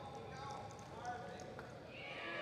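Reining horse loping on arena dirt, its hoofbeats heard as soft clip-clop, with people's voices over them.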